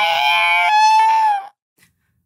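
Two men wailing together in loud, drawn-out, overlapping cries that break off abruptly about one and a half seconds in.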